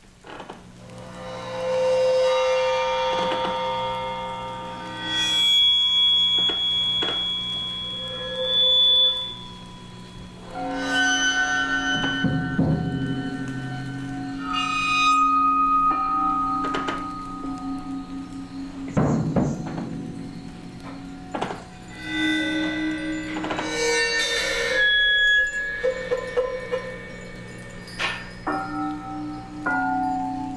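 Contemporary percussion music with a fixed electronic backing track: sustained, bell-like ringing tones over a low steady hum, cut by separate sharp strikes every few seconds. It fades in over the first two seconds.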